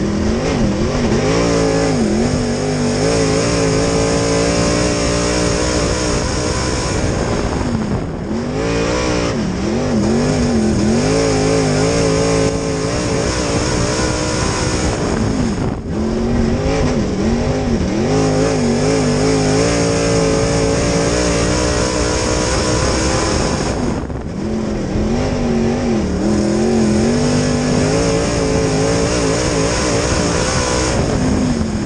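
A B-Mod dirt-track race car's V8 engine, heard from inside the cockpit at racing speed. The pitch drops as the driver lifts for each turn, about every eight seconds, then climbs again as he gets back on the throttle out of the corner and holds on the straights.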